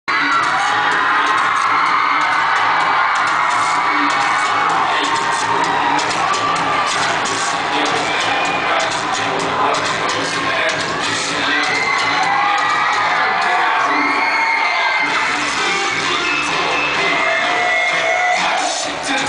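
A crowd of children cheering and shouting over loud music with a steady beat.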